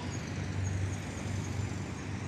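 Steady low rumble of distant road traffic, with no distinct events.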